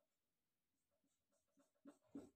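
Very faint marker strokes on a whiteboard: short back-and-forth hatching strokes shading in a bar, about four a second, the loudest near the end.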